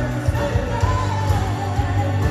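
Live band playing a song with a sung lead vocal over drums, bass and electric guitars, the bass and drum hits strong and steady beneath the melody.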